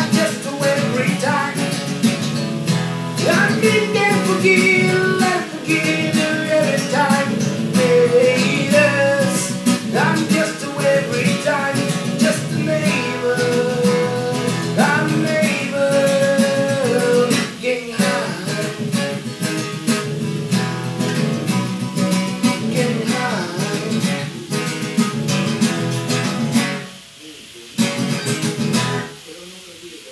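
Acoustic guitar strummed as accompaniment to singing of a worship song. Near the end the music drops away, with a short last passage before it stops.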